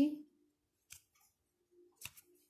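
A single short, sharp snap of a tarot card being pulled from the deck in the hand, about a second in, with a second faint card click at the very end.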